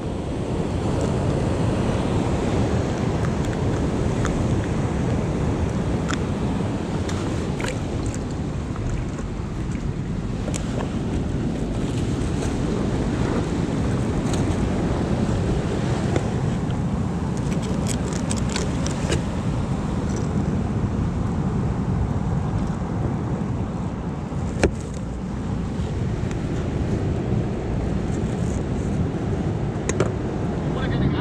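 Surf breaking on the beach and wind buffeting the microphone, a steady rushing noise, with a few small clicks and a sharper knock about 25 seconds in.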